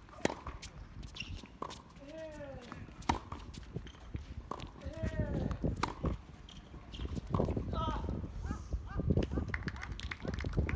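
Tennis rally on a hard court: racket strikes on the ball about every one and a half seconds, back and forth, with short pitched vocal sounds just after several of the hits.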